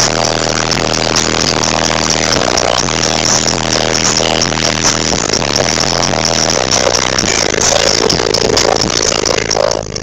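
Bass-heavy music played very loud through a car audio system with Fi Car Audio 15-inch subwoofers in a six-walled enclosure, heard inside the car's cabin. Its sustained low bass notes change every few seconds.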